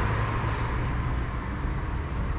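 Steady low rumble of road traffic going by.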